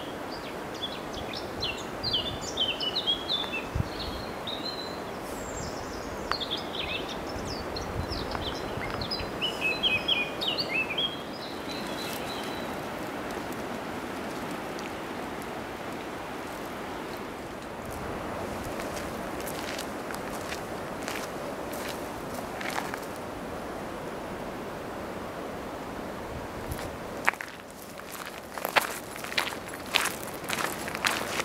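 Strong wind rushing steadily through the forest canopy, with small songbirds chirping and singing for the first dozen seconds. Scattered footsteps on the forest track join in the second half and grow more frequent near the end.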